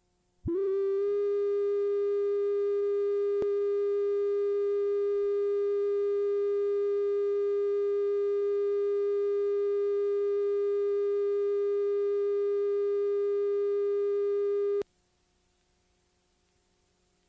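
Videotape line-up test tone that goes with colour bars: one steady, unchanging mid-pitched tone that starts abruptly about half a second in and cuts off suddenly near the end.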